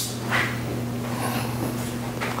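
A steady low hum with faint noise underneath, and a short hiss about a third of a second in.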